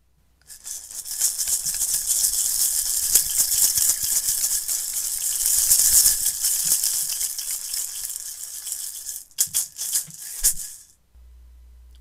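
A hand-held rattle shaken continuously, a dense hissing rattle that swells and then thins out. It ends with a few separate shakes about ten seconds in, marking the opening of a told story.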